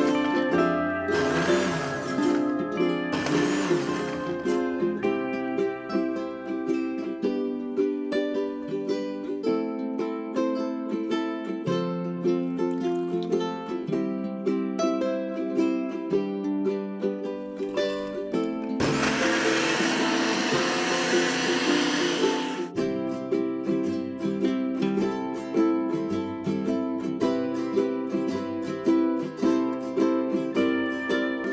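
Background music of plucked strings. A countertop blender runs over it in two short bursts in the first few seconds, then again for about four seconds past the middle.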